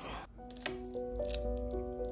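Soft background music of sustained, piano-like notes, with a few faint light taps from handling a rubber stamp and ink pad underneath. The tail of a spoken word is heard at the very start.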